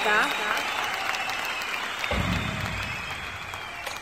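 Audience applause, slowly fading, with a low rumble coming in about halfway through.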